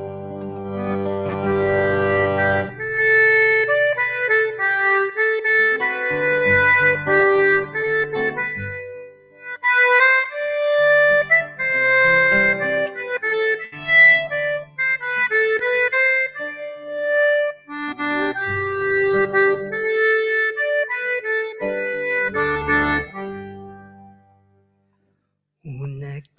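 Diatonic button accordion playing a solo instrumental tune, the introduction to a traditional Catalan song, with held bass chords under the melody for the first few seconds. The melody breaks off briefly about nine seconds in, then carries on and stops at the very end.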